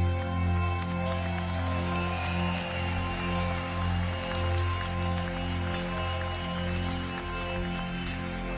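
Live rock band recording in an instrumental passage: sustained chords held under a sharp percussive hit about once a second.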